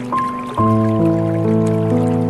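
Slow, calm piano music, a new note or chord about every half second, mixed over a faint trickling of water.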